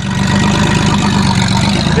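Engine of a 1994 Chevrolet Cavalier running steadily as the car drives by, a low rumble with a rapid even pulse.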